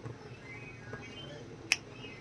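A single sharp click near the end, over faint bird chirping in the background.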